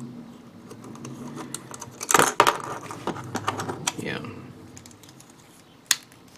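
Small plastic clicks and snaps of a 1/144 G-Frame Freedom Gundam model kit's parts and joints being handled and posed, with a loud cluster of clicks about two seconds in and a sharp snap near the end.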